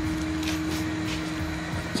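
A steady mechanical hum over a whooshing background, with a few faint taps; the hum fades out near the end.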